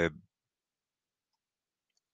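The last syllable of a spoken word, then silence, the audio cut off completely as if gated.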